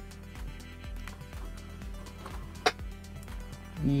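Background music with a steady beat, and one sharp click about two-thirds of the way through.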